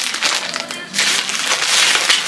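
Plastic candy packets and their bag crinkling and rustling as the candy is handled and pulled out.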